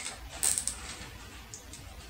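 Plastic zip tie being cinched tight around a wooden dowel axle: a short run of quick, sharp ratchet clicks about half a second in, then a few faint handling ticks.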